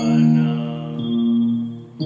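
Electronic keyboard playing sustained chords, with a new chord struck at the start and another about halfway through.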